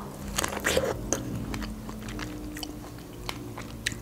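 Close-miked biting into a fresh strawberry and chewing it, with scattered small wet clicks.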